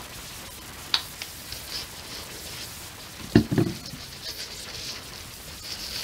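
Acrylic paint squeezed from a plastic squeeze bottle onto a canvas with faint sputtering and crackle, a small click about a second in, then a louder knock about three and a half seconds in as the plastic bottle is set down on the table.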